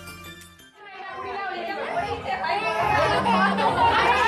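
Background music fades out under a second in, then several people talk over one another, the chatter growing louder.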